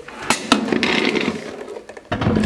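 Yorkville powered subwoofer cabinet being shifted and turned on a concrete floor: a rough scraping noise lasting over a second, with a couple of knocks near the start.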